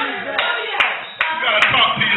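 Hand clapping in a steady rhythm, about two and a half claps a second, over raised voices.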